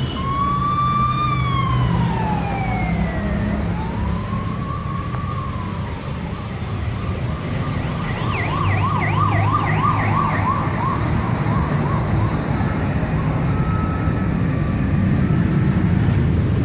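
Emergency vehicle siren sounding over a steady low traffic hum. It starts as a slow wail falling and rising in pitch, then switches about halfway through to a fast warble of about four sweeps a second.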